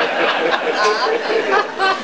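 Audience laughing after a punchline, many voices overlapping in a loud, continuous wash of laughter and chatter.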